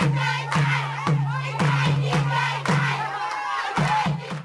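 A group of voices singing and calling out together over a regular beat, struck about twice a second.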